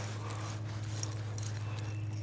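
Quiet steady background: a low hum under a faint even hiss, with no distinct sound standing out.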